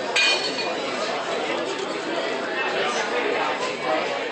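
Restaurant chatter: many diners talking at once at a steady level, with a sharp clink of tableware that rings briefly just after the start.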